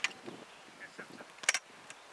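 Sharp knocks: a short one at the start and a louder one about a second and a half in, over a faint steady background.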